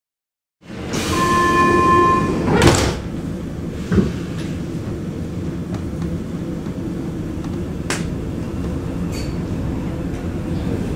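Inside a Vienna U-Bahn car, a steady door-closing warning tone sounds for about a second and a half. The sliding doors then shut with a loud thud and a second clunk follows. The car's running noise then carries on steadily as the train gets under way.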